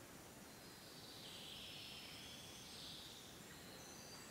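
Near silence: quiet room tone, with faint high-pitched twittering from about half a second in.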